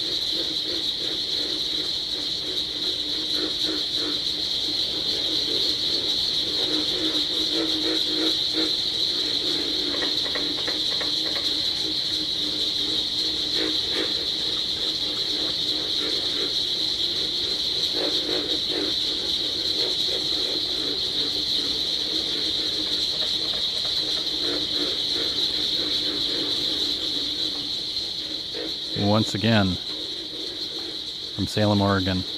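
Experimental electronic noise music played from a DJ controller: a steady high hiss over a lower, wavering drone, with a brief sweeping burst near the end.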